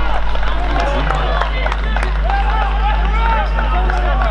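Indistinct shouting from players and spectators at a Gaelic football match, many short overlapping calls, over a steady low hum.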